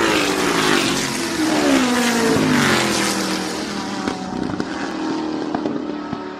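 Rally car engine running, its pitch falling steadily over the first two to three seconds, then holding lower and steady.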